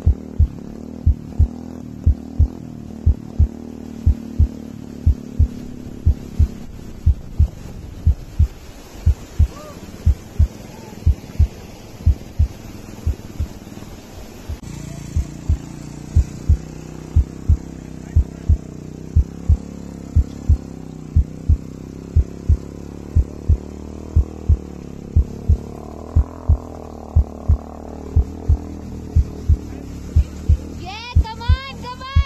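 A deep, evenly spaced thumping beat, about two thumps a second, like a heartbeat-style soundtrack laid over the scene, above a steady low rumble.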